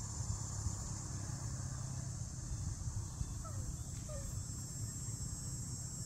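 Steady high-pitched drone of insects in the grass, over a low rumble, with a few faint short chirps about the middle.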